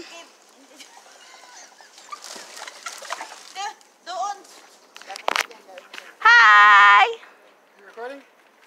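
Faint, scattered chatter, then about six seconds in one loud, long, steady-pitched vocal call close to the microphone, under a second long.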